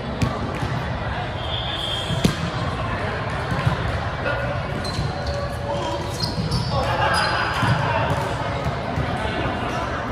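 Echoing sports-hall sound of indoor volleyball play: sharp knocks of volleyballs being hit and bouncing on the hardwood court, the loudest about two seconds in, with short high sneaker squeaks and players' voices in the background.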